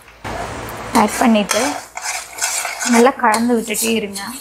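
A perforated steel ladle stirring and scraping thick milk-and-jaggery palkova around a stainless steel kadai, metal grating on metal. Wavering squeals sound about a second in and again near the end.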